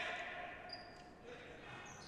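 Faint futsal court sounds in a large sports hall: the ball and players' shoes on the wooden floor, softened by the hall's echo.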